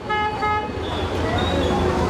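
A vehicle horn honks twice in quick succession at the start, over the steady hum of street traffic.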